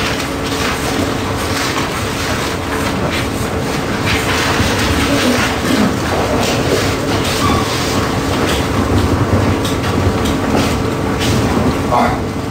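Felt marker scratching in many short strokes on a large paper easel pad close to a microphone, with a faint steady hum underneath.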